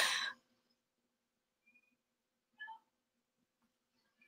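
A woman's laugh trails off in the first moment, then near silence with a faint steady hum and one faint, brief sound about two and a half seconds in.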